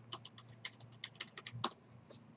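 Typing on a computer keyboard: a quick run of keystrokes, the last one the loudest, then the typing stops.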